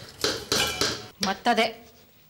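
Kitchen dishes and utensils clattering and clinking in several quick bursts through the first second.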